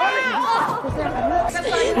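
Several voices shouting and yelling over one another.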